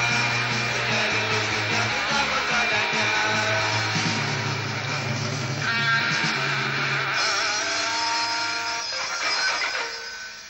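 Metal band playing a heavy rendition of a rebetiko song: distorted electric guitars over steady bass notes, with no clear singing. The sound thins after about seven seconds and begins to fade in the last second.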